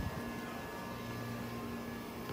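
A steady hum with a few thin steady tones over background noise.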